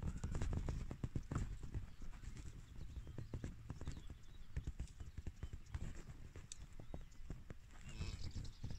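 Irregular soft thumps and knocks with some rustling, loudest and thickest in the first second and a half, then thinning out.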